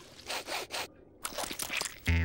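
Cartoon sound effect of lumpy, gritty mush being scooped and licked off a ladle: a rough, crunchy scraping in two short spells with a brief break about a second in.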